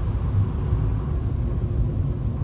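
Steady low rumble of a car driving on a wet road, heard from inside the car.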